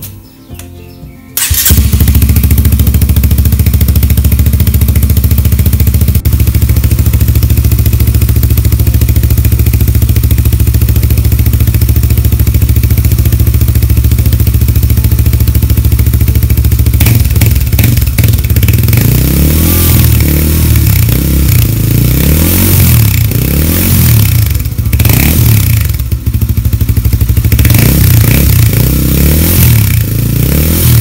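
Honda CBR150's single-cylinder four-stroke engine starting about a second and a half in and idling steadily, very loud, through a cut-open muffler with its baffle chamber removed, packed with glass wool and closed with an end plug at the tip. From a little past halfway the throttle is blipped over and over, each blip a quick rise and fall in pitch.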